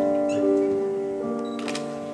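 Wind band playing the slow instrumental introduction to a copla: held chords that change once and ease down in volume before the voice comes in.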